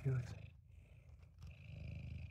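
Domestic cat purring right against the microphone: a steady low rumble.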